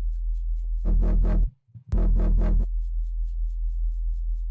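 Electronic bass loop playing back from a Bitwig session: a distorted synth bass (a Pigments patch) with its quietest band soloed, a steady deep low note under quick high ticks. About a second in, a much louder, fuller bass sounds twice, broken by a brief drop to near silence.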